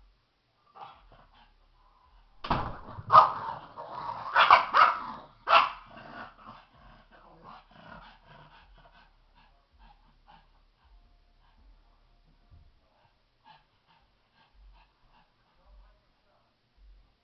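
Pug barking: about five sharp barks in quick succession a few seconds in, then fainter scattered sounds.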